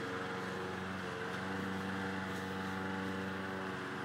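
Machinery running steadily, a continuous even hum.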